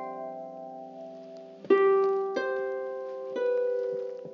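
Solo harp playing a slow, gentle piece: earlier notes ring on and fade, then a chord is plucked a little before halfway, followed by two more single notes that ring out.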